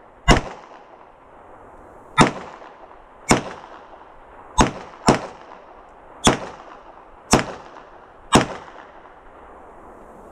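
Handgun fired in a rapid string: eight sharp shots, mostly about a second apart, with two coming only half a second apart about five seconds in.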